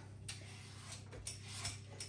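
Vegetable peeler scraping the skin off a hard butternut squash: faint scrapes with a few light clicks.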